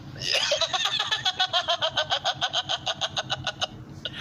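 A young man laughing hard: a long unbroken run of quick, even ha-ha pulses, about seven a second, that breaks off just before the end.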